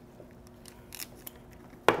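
Scissors snipping open a plastic coral shipping bag: a few light clicks and crinkles, then one much louder sharp snip near the end.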